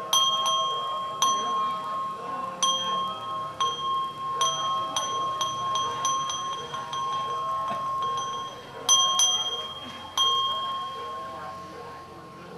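A small metal ritual bell struck about ten times at uneven intervals, each strike left ringing so that a clear bell tone carries on between strikes, with two strikes close together about nine seconds in. It belongs to a Buddhist funeral rite.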